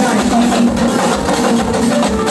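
Live Yoruba drum ensemble playing a dense, steady rhythm on hourglass talking drums and hand drums, with a voice over the drumming.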